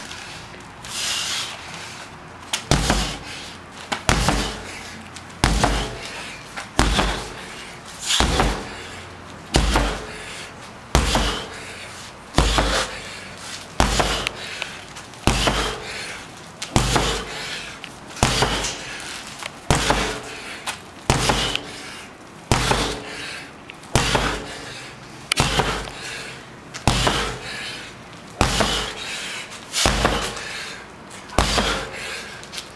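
A 16 lb sledgehammer repeatedly striking a big rubber tractor tire: a heavy thud about every second and a half in a steady rhythm, some twenty blows, starting a couple of seconds in.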